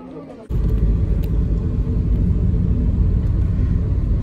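Steady low rumble of engine and road noise inside a moving car's cabin, starting abruptly about half a second in.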